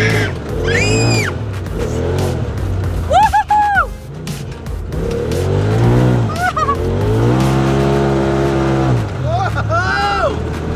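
People screaming and yelling with excitement while riding in a Polaris RZR side-by-side. There are several short, high, rising-and-falling screams and a long, lower yell in the second half, over the low running of the vehicle's engine.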